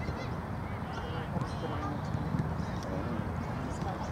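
Outdoor ambience of a youth football match: distant players' voices and short calls across the pitch over steady low background noise.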